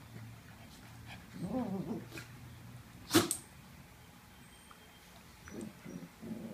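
Two small dogs, a Morkie and a Schnauzer, play-wrestling and growling. A growly stretch comes about a second and a half in, one short sharp bark just after three seconds is the loudest sound, and more growling starts near the end.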